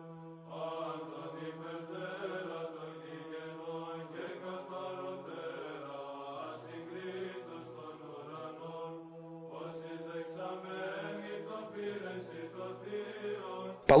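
Religious chanting: voices sing a slow melody over a steady held drone, quiet beneath the film's narration, with a brief break about nine seconds in.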